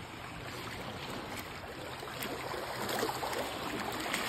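Shallow lake water sloshing and splashing around legs wading through it, with small waves lapping; the splashing grows a little louder about three seconds in.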